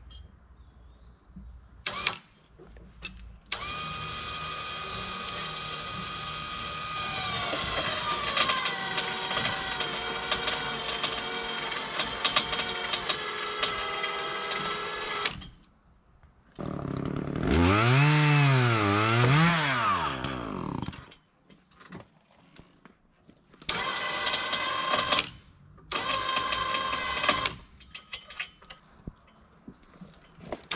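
Log arch winch motor running in several pulls as it lifts a hemlock log off the ground. It gives a steady whine that drops in pitch as it takes up the load. A run near the middle wavers up and down, and two short runs follow near the end.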